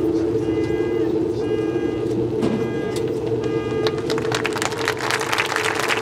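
Marching band holding a long sustained chord in its warm-up, with a short metronome-like beep about once a second. Crowd clapping builds from about four seconds in.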